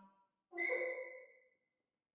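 Piccolo clarinet and saxhorn playing short, separated notes in free improvisation. A low note's tail fades out at the start, then about half a second in comes a brief note of about a second, a high tone over a lower one.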